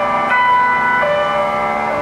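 Background music: a slow melody of held notes, each with a new pitch about every half-second.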